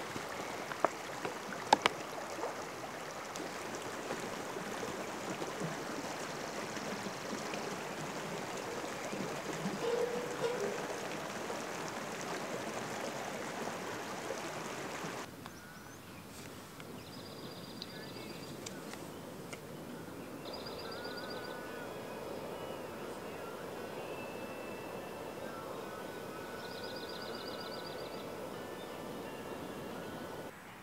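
Small stream running, with a couple of sharp clicks near the start. About halfway through, the stream noise drops away to a quieter outdoor background in which a bird gives three short rapid trills.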